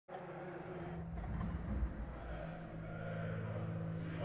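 A low, steady rumble with a held hum, slowly growing louder.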